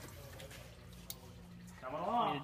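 Faint trickle and drip of coolant draining from the radiator's bottom petcock into a drain pan, under a faint steady low hum, with a single sharp click about a second in.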